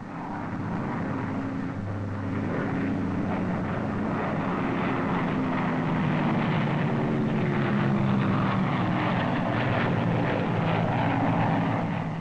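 Lockheed XP-58's twin Allison V-3420 piston engines and propellers in flight, a steady drone that grows louder over the first few seconds and then holds.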